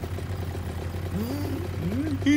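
A low steady hum, with two short wordless cartoon-character vocal sounds that rise and fall in pitch in the second half.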